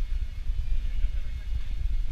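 Outdoor ambience: an uneven low rumble of wind on the camera microphone, with distant city traffic behind it.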